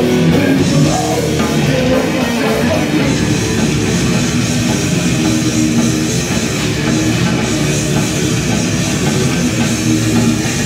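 A metal band playing live: distorted electric guitars and a drum kit in a dense, unbroken wall of sound.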